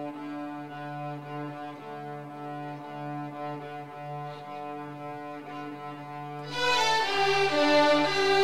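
A children's string orchestra of violins and cellos plays bowed, sustained notes over a steady low note. About six and a half seconds in, the violins enter louder and higher.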